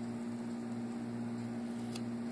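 Steady low hum with a faint background hiss.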